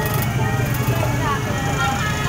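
Music for an ondel-ondel procession, mixed with motorbike engines running and the voices of the crowd.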